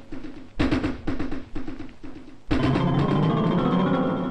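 Film background score: a run of quick drum beats, then a loud sustained chord about two and a half seconds in.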